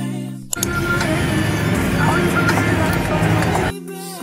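Background music cuts off about half a second in, giving way to about three seconds of loud road and traffic noise with a low rumble and indistinct voices. The music returns near the end.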